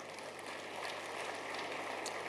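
Faint, even background noise of a large hall, with a few light ticks through it.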